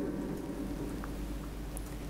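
Room tone in a pause between speech: a steady low hum and hiss, with a faint tick or two.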